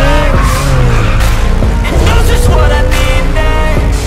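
A sports car's engine revving, its pitch rising in the second half, with tyre squeal as it drifts. This is mixed with loud music that has a beat.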